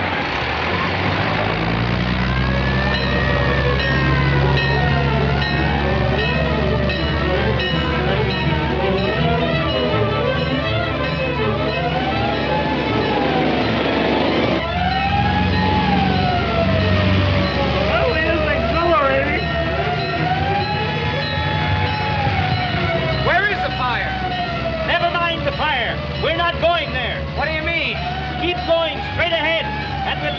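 Fire truck siren wailing, its pitch rising and falling over and over, over the low rumble of the truck's engine.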